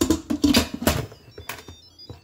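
Instant Pot lid being handled and turned on the pot: a quick run of knocks, clicks and scrapes over about a second and a half.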